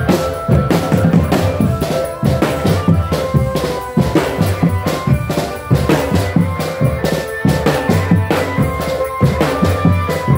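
Marching drum band playing: bass drums and snare drums beating a fast, steady rhythm, with a melody of held notes sounding over the drums.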